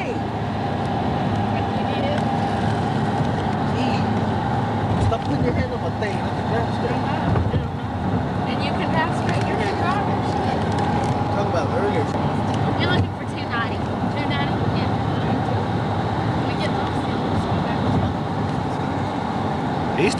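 Steady road and engine noise heard from inside a moving car, with faint voices now and then.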